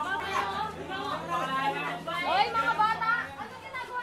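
Several teenage students talking over one another.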